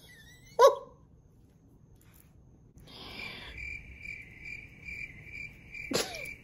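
A brief vocal sound just under a second in, then, from about three seconds, cricket chirping: a high, even chirp repeating about twice a second.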